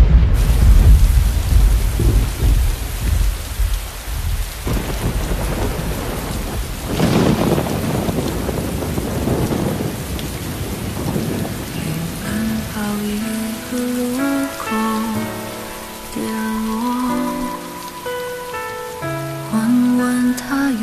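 Steady heavy rain with a deep thunder rumble over the first few seconds and another swell of rain noise about seven seconds in. From about twelve seconds a soft melody of single notes comes in over the rain.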